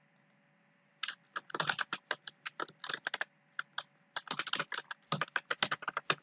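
Typing on a computer keyboard: a fast run of key clicks that starts about a second in, with a few short pauses between bursts.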